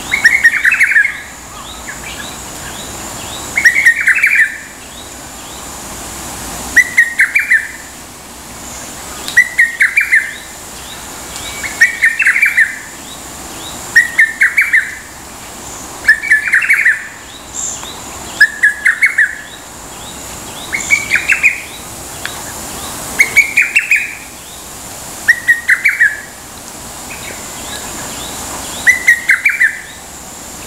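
A lesser cuckoo singing its short phrase of several quick notes over and over, about a dozen times, each phrase coming every two to three seconds.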